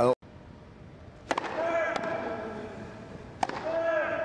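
Tennis ball struck by a racket twice, about two seconds apart, each stroke followed by a short held grunt from the player, over a low crowd murmur on a grass court.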